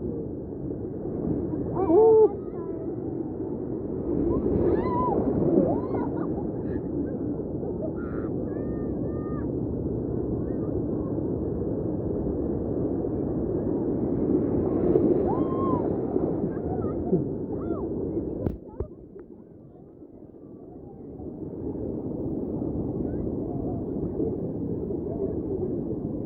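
Steady, muffled rushing of river water through whitewater rapids. Near the end it drops away suddenly for a couple of seconds, then returns.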